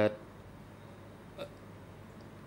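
A pause in speech: a spoken word ends right at the start, then only a low steady hum on the microphone line, with one brief faint vocal sound about one and a half seconds in.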